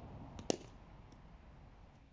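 Cricket bat striking a hand-fed ball once: a single sharp crack about half a second in, with a fainter tap just before it.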